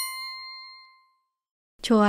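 A single bright electronic 'well done' chime, the correct-answer sound effect, ringing out and fading away within about a second. A woman's voice starts just before the end.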